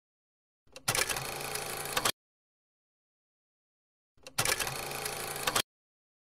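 An edited-in film-projector-style rattle sound effect, played twice as identical bursts of about a second and a half, each opening with a couple of clicks. Around the bursts there is dead digital silence rather than room sound.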